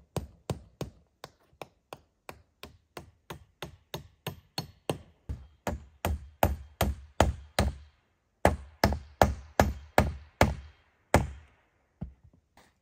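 Hammering a corrugated ondulin roofing sheet onto a log wall: steady blows about three a second, growing heavier partway through, a short pause, then several hard blows that stop near the end.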